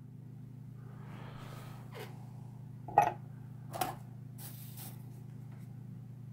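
Low steady electrical hum with a few faint clicks from handling a small slot-car motor, and a brief soft hiss about four and a half seconds in.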